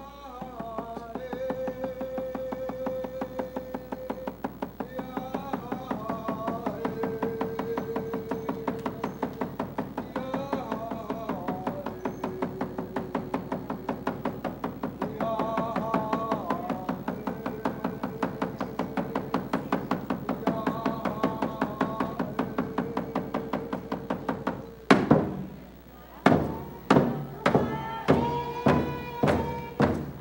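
A man singing a Tlingit song in long, held notes over a hand-held frame drum beaten in rapid, even strokes. About 25 seconds in, the drum changes to loud, slower, heavy beats, roughly one and a half a second, while the singing goes on.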